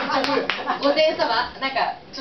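Voices talking on a stage PA with a few sharp hand claps in the first half second or so.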